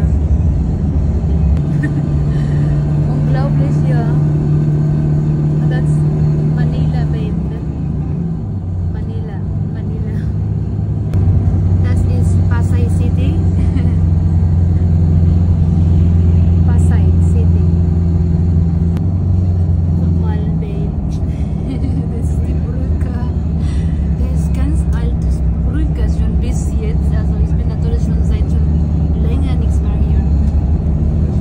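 Bus engine and road noise heard from inside the passenger cabin while riding in traffic: a steady low drone whose pitch drops and grows louder about a third of the way in, with voices in the background.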